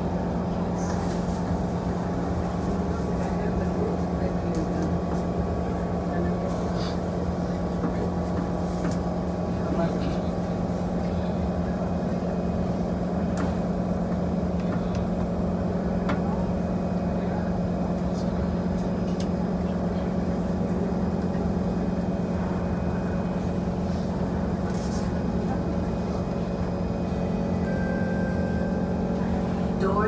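SMRT C151 train standing at a platform with its doors open, its onboard equipment and air-conditioning giving a steady hum with one strong low tone.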